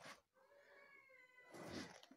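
One faint, drawn-out call lasting a little over a second, falling slightly in pitch, with soft rustling just before and after it.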